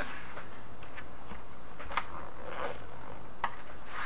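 Faint rustling and a few light clicks of a black nylon camera-style carrying case being handled and turned over on a wooden bench.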